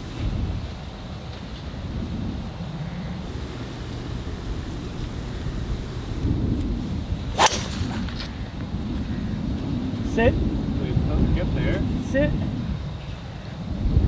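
A golf driver striking a ball off the tee: one sharp crack about seven seconds in, over a steady low rumble of wind on the microphone.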